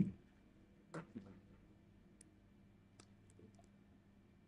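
Very quiet room tone with a few faint clicks: the clearest is about a second in, followed by a smaller one and then scattered tiny ticks later on.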